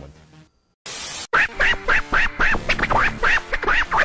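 Channel intro jingle: a short burst of hiss about a second in, then music with a rapid run of short, arching high tones, about five a second, over steady lower notes.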